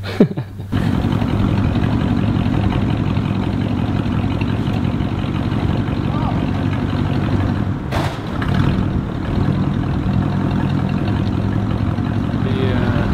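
An old convertible car's engine running with a steady low rumble, briefly interrupted about eight seconds in.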